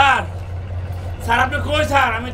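A man's voice speaking in short phrases, with a pause of about a second in the middle, over a steady low hum.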